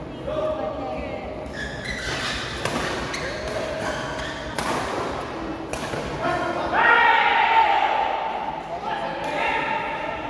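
Badminton rackets hitting a shuttlecock in a doubles rally, several sharp hits about a second apart, ringing in a large hall. People's voices run through it, with a loud call about seven seconds in.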